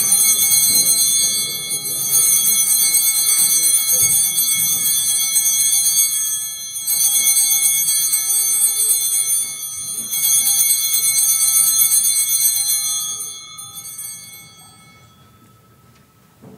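Altar bells shaken in about four long peals that die away about two seconds before the end. This is the bell ringing at the elevation of the host during the consecration at Mass.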